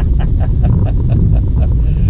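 Car driving over a rough, broken road, heard from inside the cabin: a heavy low rumble from the tyres and suspension, with a fast, regular rattle about six times a second.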